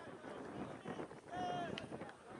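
Unclear shouting voices across an open sports field, with one louder, held call a little past halfway.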